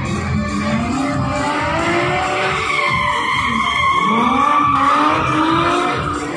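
Stunt cars drifting, their engines revving up and down and their tyres squealing, loudest about four to five seconds in, over background music.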